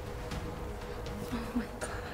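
A steady buzzing hum, with a short soft sound about one and a half seconds in.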